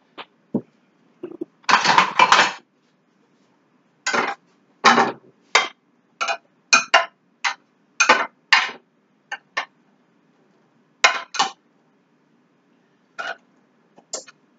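Short, irregular clinks and knocks of mushrooms and a utensil being handled in a glass baking dish, about fifteen separate sounds with pauses between them.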